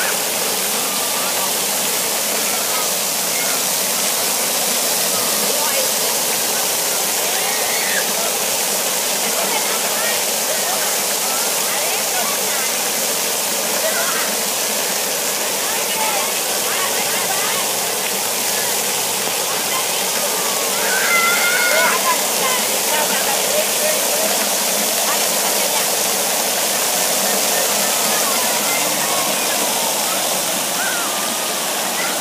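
Splash-pad water showers and spray fountains running steadily, a continuous hiss of falling water on the pad. Children's voices and shouts come through faintly over it, with one louder high call about two-thirds of the way through.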